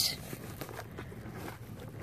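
Faint, even outdoor background noise with a few light ticks and rustles, a pause between words.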